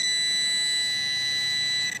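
Garrett Pro-Pointer pinpointer probe sounding one steady high-pitched alert tone as it is held over a buried metal target; the tone stops just before the end.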